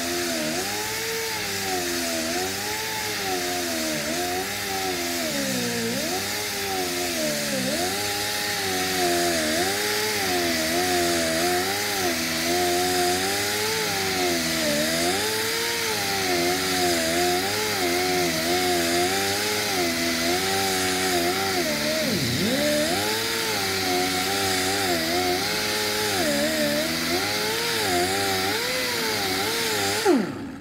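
Pneumatic grinder with a backing-pad disc cross-cut grinding paint off a sheet-metal panel, its speed wavering up and down as it is pressed into the work, dipping almost to a stall about twenty-two seconds in, over a steady hiss. It is deliberately held at low speed, near stalling, to keep heat down and avoid warping the sheet metal. It stops abruptly at the very end.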